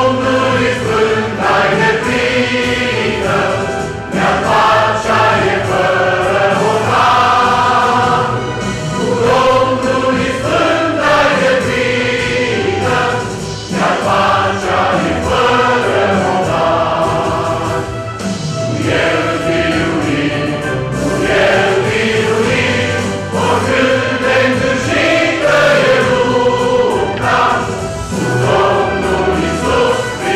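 Large mixed choir of men's and women's voices singing a Christian choral song in parts, continuously.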